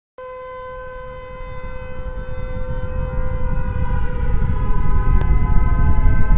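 Intro sound effect: a steady held tone with overtones over a deep rumble that swells steadily louder, building toward a hit.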